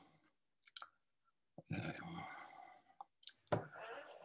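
A few soft mouth clicks and a faint murmured voice from a man pausing mid-sentence, quiet overall, with a small knock about three and a half seconds in.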